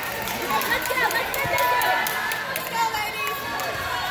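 Many overlapping voices of players and spectators talking in a gym hall, with short sharp clicks scattered through.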